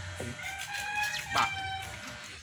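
A rooster crowing: one long, held call starting about half a second in.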